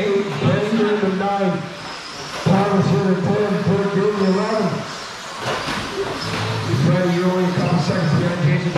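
Indistinct male speech, talking on and off with short pauses.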